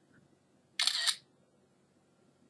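iPod touch camera shutter sound effect, played once as a photo is taken: a single brief shutter sound about a second in, lasting under half a second.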